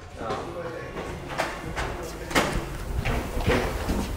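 Faint, indistinct talk with a few scattered sharp knocks and clatters.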